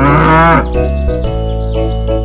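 A cow's moo lasting under a second and bending in pitch at the start, over the steady backing music of a children's song.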